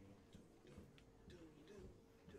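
Near silence: faint room tone with a few small scattered clicks and quiet, indistinct voices.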